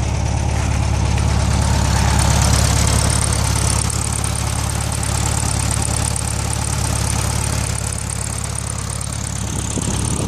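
A 1973 VW Beetle's air-cooled flat-four engine idling steadily.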